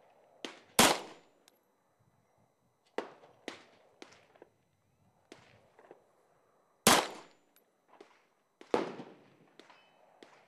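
Three slow, deliberate shots from a Wilson Combat Vickers Elite 1911 pistol firing 115-grain Federal American Eagle rounds. The shots come about a second in, then about six seconds later, then two seconds after that, each a sharp crack with a short echo. Fainter gunshots sound in between.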